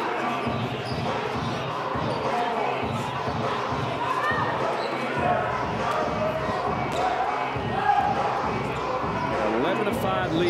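A basketball bouncing on a hardwood court, with indistinct voices echoing through a large arena hall.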